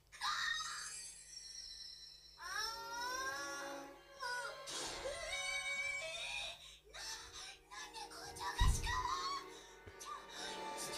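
Anime episode audio played from a laptop's speakers: a girl's voice crying out in Japanese over background music. A low thump sounds near the end.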